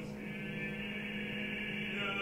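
Bass-baritone opera voice singing with vibrato over an orchestra, with a steady low note held underneath.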